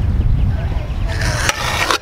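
Pro scooter wheels rolling on concrete with a low rumble and rough scraping hiss, then a single sharp knock about one and a half seconds in as the rider pops the scooter off the ground.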